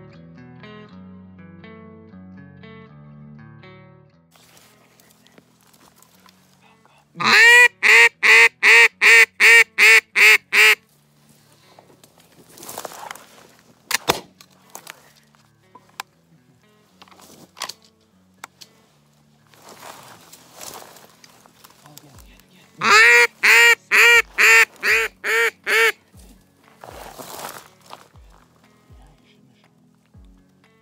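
Duck call blown as a string of loud, evenly spaced quacks, about nine notes in a quick row, then, some twelve seconds later, a second run of about eight that trails off quieter: hail-style calling to draw passing ducks in to the decoys. Background music plays over the first few seconds.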